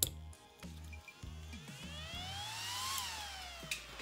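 Small 40 mm RC cooling fan powered up for a test: a click, then a whine that rises in pitch as the fan spins up, peaks about three seconds in, and falls as it winds down. The fan is running again after its leads were crimped into a new JST connector.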